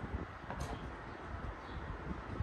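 Person chewing food, with a short click of a spoon against a plate about half a second in, over a low background rumble.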